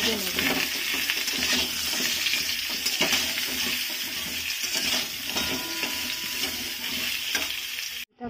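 Potato halves sizzling steadily as they fry in hot oil in a metal kadai, with a metal spatula scraping and clicking against the pan as they are stirred.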